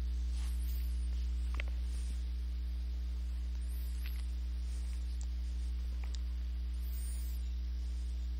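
Steady low electrical mains hum with a couple of fainter higher hum tones over it, and a few faint clicks along the way.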